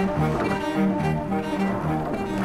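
Background music of low bowed strings, cello-like, playing a line of short held notes.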